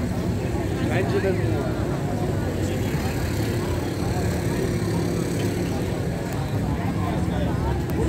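Crowd of people talking on a busy street, voices mixed together, over a steady low hum.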